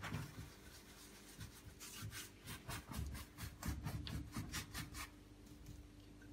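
A paintbrush's bristles scrubbing acrylic paint onto stretched canvas in quick back-and-forth blending strokes, several a second, thinning out near the end.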